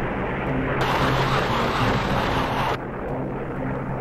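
Jet aircraft noise: a steady drone with a low hum, and a brighter hiss that comes in about a second in and cuts off just before three seconds.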